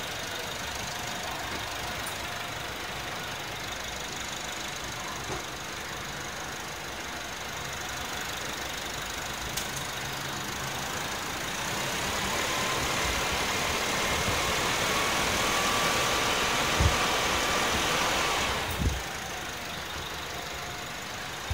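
Isuzu D-Max 1.9 Ddi Blue Power four-cylinder turbodiesel idling, then revved lightly from about twelve seconds in, with a faint whine that rises as the revs climb. The engine drops back to idle just before the end.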